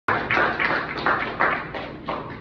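Breathy laughter close to the microphone, about three bursts a second, dying away.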